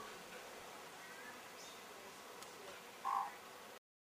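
Faint, scattered bird calls: a few short chirps, then one louder short call about three seconds in, before the audio cuts off.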